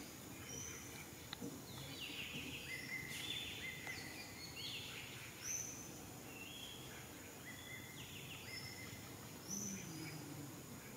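Forest ambience with several birds calling: short whistled notes at a few different pitches, repeated throughout, with some quick trills, over a faint steady background hiss.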